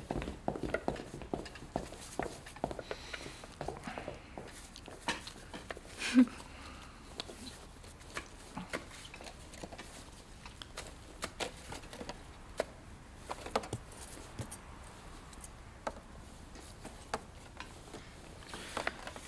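Quiet kitchen handling noise: scattered light clicks and knocks of dishes, cutlery and a salad bowl being handled and set down, with soft footsteps.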